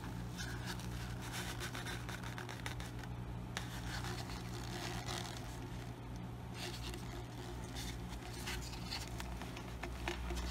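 Faint handling sounds: light scrapes and small taps as a glass ball ornament is turned and moved on its bottle stand, over a steady low hum.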